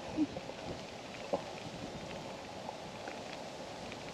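Steady, quiet outdoor background noise, an even hiss with no clear source, with one faint click a little over a second in.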